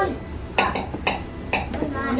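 A black slotted spatula knocking and scraping against a stainless steel saucepan while stirring melting marshmallows, with about five sharp clinks spread over two seconds.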